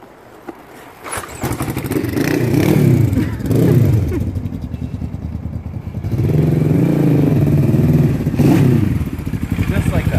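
1983 Suzuki GR650's air-cooled parallel-twin engine firing after a push start, catching about a second in and then revving up and down in two long sweeps as the motorcycle pulls away.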